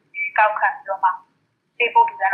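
A person speaking Burmese over a telephone line, the voice thin and narrow as through a phone, with a short pause about a second and a quarter in before talking resumes.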